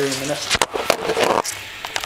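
Handling noise as the recording phone is picked up and moved: a sharp knock about half a second in, then about a second of rustling and small knocks as the kite wing's fabric brushes the microphone, quieter near the end.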